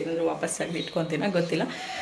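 A woman talking, in continuous speech.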